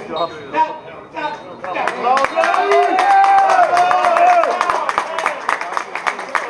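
Several men shouting at once from about two seconds in, one voice holding a single long call, with sharp claps among the shouts.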